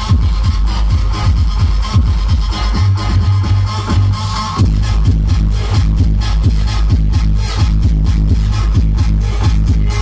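Electronic dance music with a heavy, booming bass and a steady beat, played loud through a large outdoor sound system of stacked loudspeakers during a live DJ set.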